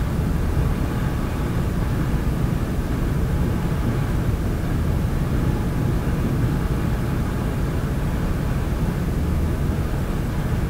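A steady low rumble that stays even throughout, with no beat, voice or distinct events.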